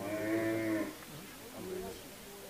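A cow mooing once, a low drawn-out call of just under a second, with faint voices around it.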